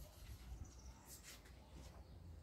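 Near silence: room tone, with a few faint, brief rustles a little past the middle, like gloved hands handling pots.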